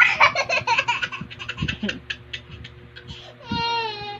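A toddler laughing hard in rapid bursts that trail off over the first two seconds, followed near the end by a short, high-pitched squeal of laughter.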